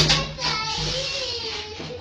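A sharp thump at the start, then a voice holding one long wavering note for about a second and a half.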